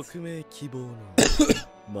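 A man coughs once, short and sharp, about a second in.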